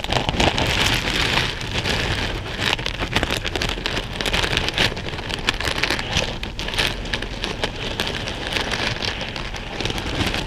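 A hand stirring and sifting through a cloth-lined plastic bowl of buttons, beads, sequins and beach glass: a dense, steady patter of small plastic and glass clicks and clatters, close-miked.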